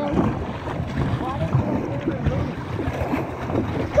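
Double-bladed kayak paddle strokes splashing and water washing against the kayak, with wind buffeting the microphone.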